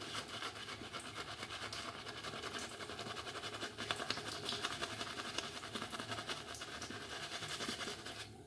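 Synthetic shaving brush swirled over lathered cheeks and jaw, a soft scratchy swishing in quick, even strokes as triple-milled soap is worked into a lather on the face.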